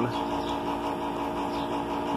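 A steady, even machine hum with no change in pitch.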